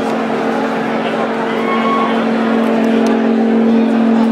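Loud electronic music from a club DJ set: a sustained low synth drone holding a steady chord with no beat, over the noise of a talking crowd.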